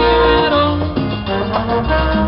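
Live plena band playing a salsa-flavoured instrumental passage, with no singing.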